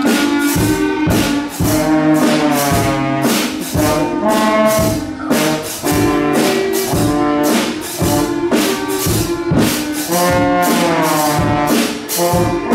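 Grade-school concert band playing, brass instruments carrying the melody over a steady, regular drum beat.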